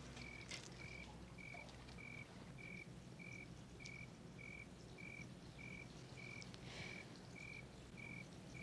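A cricket chirping faintly at an even pace, about three chirps every two seconds, over a low background hum.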